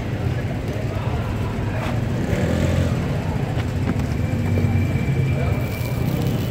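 Outdoor street ambience: a steady low rumble of road traffic, with faint voices in the background.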